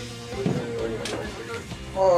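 Background music, with short wordless strained vocal sounds from a man heaving a heavy AGM battery.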